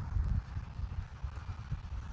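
Wind buffeting an outdoor camera microphone: an uneven low rumble.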